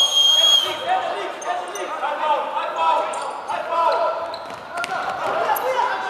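A referee's whistle blast that cuts off less than a second in, followed by indistinct shouting from players and a few thuds of a futsal ball, all echoing in a sports hall.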